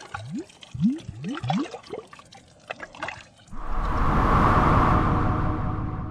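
Logo-animation sound effects: a quick series of water-drop plops, each a short rising blip, then about three and a half seconds in a swelling whoosh with a held musical chord that slowly fades.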